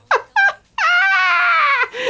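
High-pitched squealing laughter: a few quick falling yelps, then one long high-pitched squeal about a second in.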